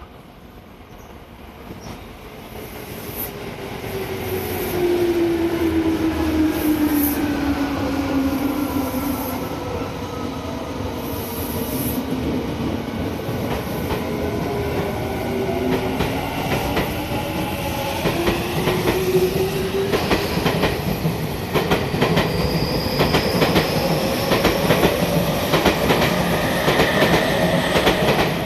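Tokyu 5000 series electric train pulling away: its VVVF inverter traction drive sings in several gliding tones that first fall and then climb as it gathers speed. Wheel clacks over rail joints come thicker and faster in the last seconds as the cars pass.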